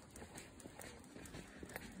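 Faint footsteps on an asphalt path, a quick even run of light steps.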